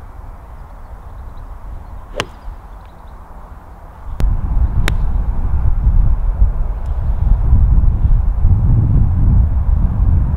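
An iron strikes a golf ball about two seconds in, one sharp click. From about four seconds in, wind buffets the microphone in a loud low rumble, with two fainter ticks.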